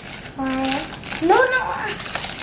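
Crinkling of a plastic bag as water beads are shaken out of it into slime, with a child's two wordless exclamations over it, the second rising in pitch.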